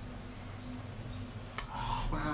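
Low steady rumble inside a moving cable-car gondola cabin, with a single sharp click about one and a half seconds in.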